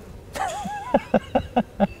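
A man laughing: a high, wavering squeal-like laugh, then about five quick, evenly spaced 'ha's.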